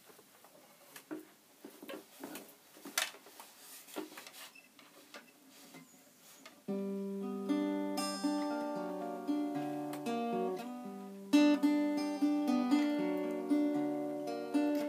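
Scattered quiet clicks and knocks as a guitar is settled into playing position, then, about seven seconds in, an acoustic guitar starts playing a chord pattern, the introduction to a song.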